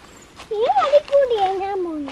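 A young child's voice: one drawn-out high-pitched call starting about half a second in, rising and then sliding down in pitch.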